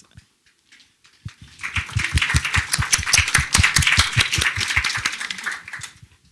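Audience applauding with many overlapping hand claps, starting about a second in and dying away just before the end.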